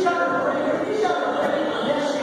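Several people's voices raised at once, overlapping so that no words come through.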